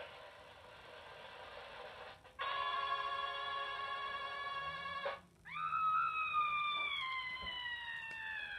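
A run of played-back sound effects. First a faint hiss, then a steady buzzy tone for under three seconds that cuts off suddenly, then a long wailing tone that slowly falls in pitch.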